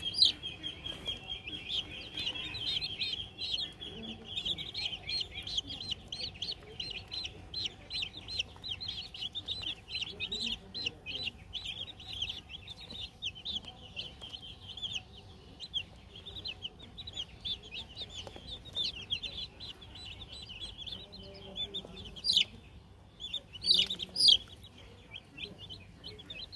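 Domestic chicks peeping continuously, many short high chirps overlapping. Two or three louder sharp sounds stand out near the end.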